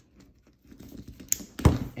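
Black plastic cable plugs being handled and pushed into a SANlight edge connector: a few small clicks, then one louder snap-and-knock about one and a half seconds in.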